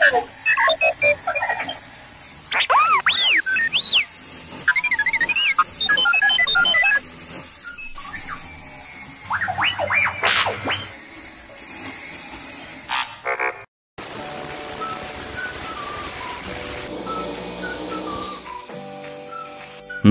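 R2-D2-style robot sound effect: bursts of quick beeps, rising and falling whistles and warbling chirps over the first thirteen seconds or so. After a brief cut to silence, a softer tune of plain stepped notes plays.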